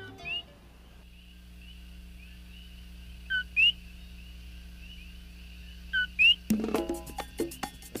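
Coquí frogs calling at night: a faint chorus of short rising chirps, with two louder close calls of the two-note "co-quí" form, a short low note and then a quick rising whistle. Music with a beat comes in about two-thirds of the way through.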